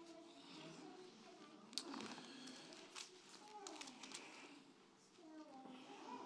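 Near silence: a few faint, brief rustles of Bible pages being turned, with faint voices in the background.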